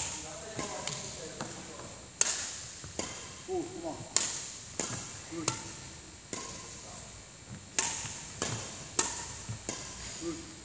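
Badminton racket strings striking shuttlecocks again and again in a multi-shuttle feeding drill: about ten sharp cracks, unevenly spaced half a second to a second apart.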